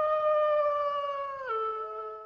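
A single long wolf howl, held at a steady pitch, then dropping a step lower about one and a half seconds in and fading.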